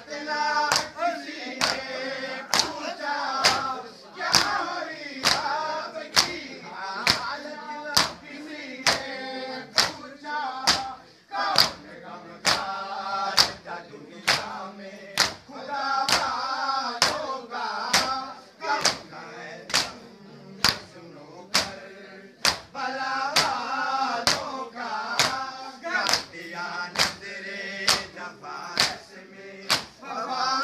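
Shia matam: a group of men chanting a noha in unison while beating their chests with open palms in a steady beat, a sharp slap a little more than once a second.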